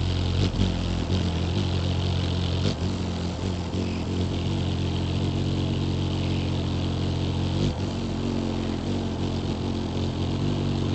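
Wings of a hovering Anna's hummingbird humming close by, a steady low buzz that wavers briefly a few times.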